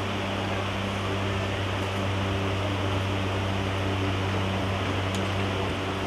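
A steady low hum with an even hiss over it, unchanging throughout.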